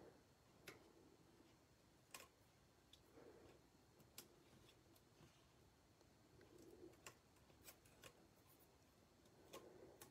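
Near silence, with faint scattered ticks and soft rustles of paper as tiny adhesive foam dimensionals are picked and peeled from a sticky sheet.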